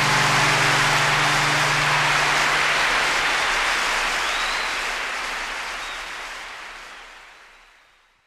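Audience applauding at the end of a live acoustic performance, with the last guitar chord ringing under it for the first few seconds. The applause fades out gradually toward the end.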